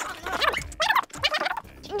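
A person's voice making a rapid, warbling, gobble-like noise in a few short bursts.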